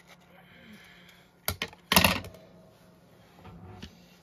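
Scissors and a small paper box handled on a craft mat while ribbon ends are trimmed: a faint rustle, two short clicks about a second and a half in, then a louder clatter at about two seconds.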